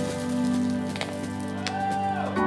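Background music with long held notes, one note bending down near the end, and two brief clicks about one second and just under two seconds in.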